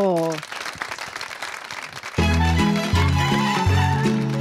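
Brief applause, then about two seconds in a taraf, a Romanian folk band with violin, wind instruments and keyboard, strikes up a song introduction with a strong bass line.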